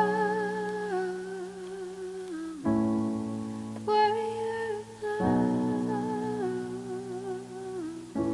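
Slow music: a long wordless vocal note with vibrato, over sustained chords that come in about three seconds in and again about five seconds in.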